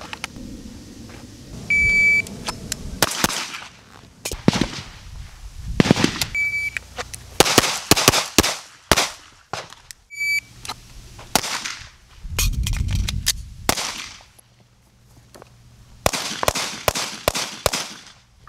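Shot-timer drills with an STI Staccato P 2011 pistol: a shot timer beeps three times, each beep followed by a quick string of pistol shots. Another fast string of shots comes near the end.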